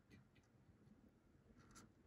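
Near silence: faint room tone with a few soft ticks and a light rustle near the end.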